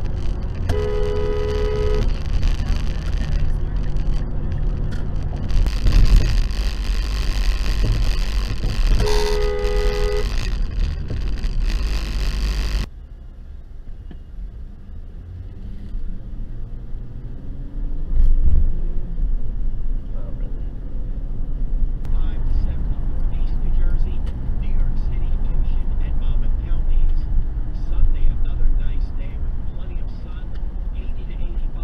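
A car horn sounds twice over steady road noise inside a car at highway speed. Each honk is about a second long, with two notes together, and the honks come about 8 s apart. After an abrupt cut, quieter in-car driving sound follows, with the engine note rising and falling.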